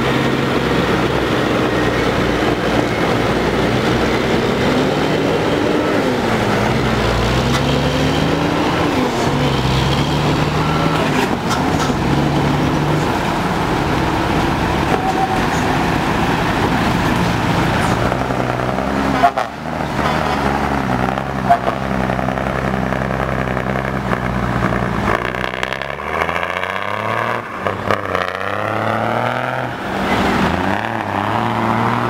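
Heavy diesel truck engines running and revving up and down as trucks drive off a ferry barge up the loading ramp, the engine pitch rising and falling with the throttle. A couple of sharp knocks come about two-thirds of the way in.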